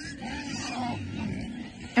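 Young pigs grunting faintly.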